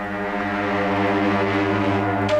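Film background score: a low, sustained drone chord that swells slowly in loudness.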